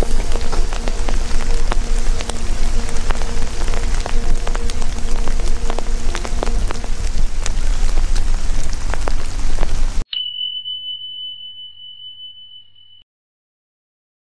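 Rain falling on a river's surface, a dense patter of small drop clicks over a low rumble. About ten seconds in it cuts off abruptly, and a single high chime rings and fades away over about three seconds.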